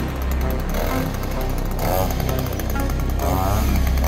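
Chainsaw engine running and revving in repeated rising surges, over background music.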